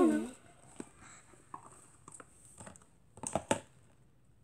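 Plastic slime tubs being moved around on a table: faint knocks and scrapes, then two sharper plastic clicks about three seconds in.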